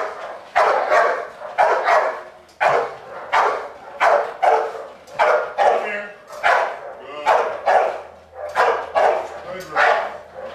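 American bulldog barking repeatedly and steadily, about two barks a second, at a helper with a bite pillow during protection training.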